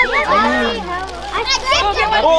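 A group of children talking and calling out over one another, their high voices rising and wavering.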